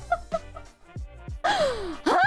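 Background music with short repeated notes and a low beat. About one and a half seconds in, a woman gives a breathy cry that slides down in pitch, like a gasp of shock.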